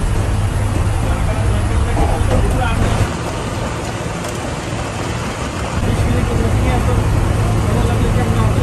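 Steady road noise heard from inside a vehicle driving at speed: a low engine and tyre rumble with a hiss of road and wind noise. It dips a little in level about three seconds in and rises again about three seconds later.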